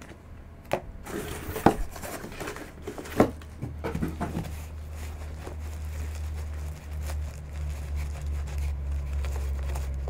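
Rustling and crinkling of a black drawstring bag as hands work it off a mini football helmet, with a few sharp knocks of handling in the first few seconds. A low steady hum sits underneath in the second half.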